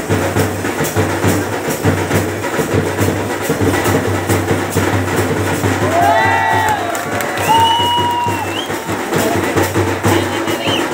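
A drum beaten in a fast, steady rhythm, with sharp strokes over low thumps. A little past the middle, a high, drawn-out call rises, bends and holds for a second or two over the drumming.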